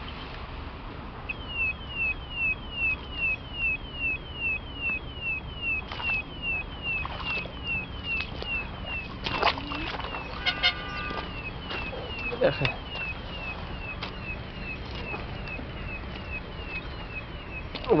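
A high chirp that slides downward, repeated steadily about three to four times a second, with a few crunching footsteps on gravel.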